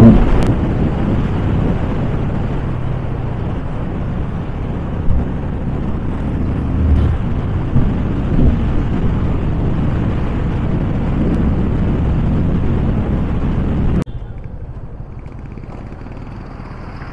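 Yamaha FZ25 motorcycle at road speed: its single-cylinder engine runs steadily under wind rushing over the camera microphone. About fourteen seconds in, the sound drops suddenly to a quieter, lighter ride noise.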